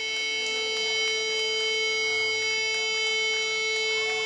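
Electric guitar amplifier feedback between songs: a steady drone of several held pitches with no beat.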